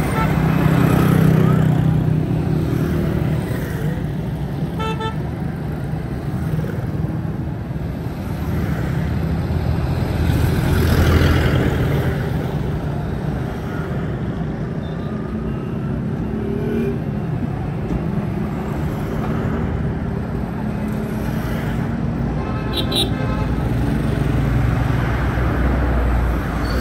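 Busy street traffic with engines running and vehicles passing close by, loudest about a second in and again around eleven seconds. A vehicle horn gives a short toot about five seconds in and another near the end.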